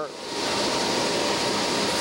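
Harris M1000B heatset web offset press running: a loud, steady mechanical noise with a faint steady whine through it.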